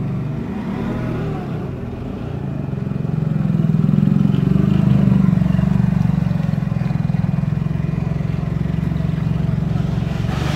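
Propane-fuelled Mitsubishi forklift's engine running close by, revving up about three seconds in as it drives off, then holding a steady hum.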